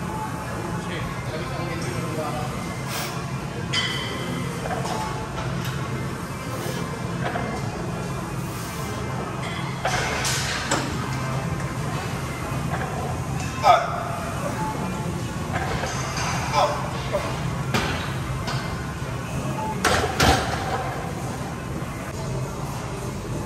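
Gym background of music and indistinct voices, with a few short sharp clanks of weights, the loudest about fourteen seconds in.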